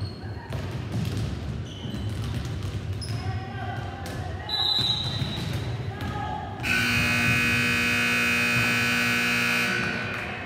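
Volleyballs being hit and bouncing on a gymnasium floor, sharp slaps and knocks with players' voices in the background. About two-thirds of the way in, a gym scoreboard buzzer sounds: one loud, steady blare of about three seconds that cuts off abruptly just before the end.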